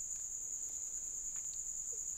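A steady, high-pitched electrical whine in the recording, constant and unchanging, with a few faint clicks of computer keyboard typing.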